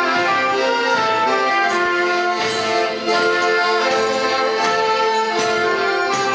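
Small folk band of accordion, trumpet and violin playing a traditional tune together, with steady sustained notes.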